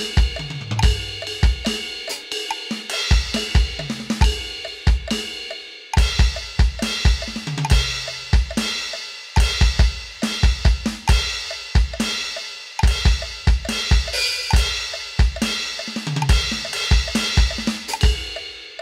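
Vangoa VED-B10 electronic drum kit's sound module played live to a 140 BPM metronome. Kick drum, snare, hi-hat and cymbal sounds come in quick rhythmic runs, phrase after phrase, with brief breaks between them.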